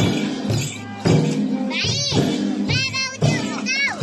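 Limbu chyabrung drums beating in a steady rhythm over music. High-pitched voices call out twice in the middle and later part, with a crowd talking.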